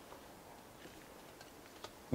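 Near silence: room tone, with one faint tick near the end.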